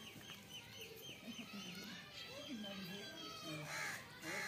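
Chickens clucking in low, repeated calls, with a quick run of high little chirps in the first second and a louder call just before the end.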